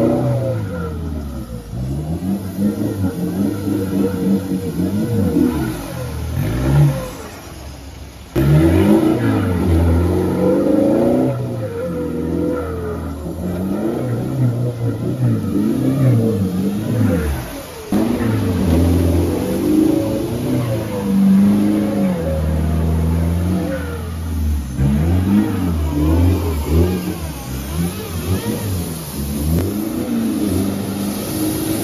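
Mitsubishi Triton ute's engine revving hard, the pitch climbing and falling again and again as the wheels spin through deep mud. The sound breaks off and cuts back in sharply twice.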